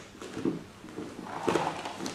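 Two soft shuffles of feet on a training mat and rustling practice uniforms as a partner steps in and grabs from behind, the second shuffle, about one and a half seconds in, the louder.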